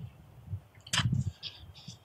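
Small handling sounds while a bird held in the hand has its leg measured for band size: one sharp click about a second in, followed by a few faint high-pitched sounds.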